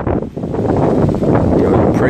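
Wind on the microphone: a loud, continuous rushing noise, strongest in the low range.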